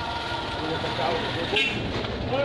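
A steady low engine rumble, with faint voices talking in the background.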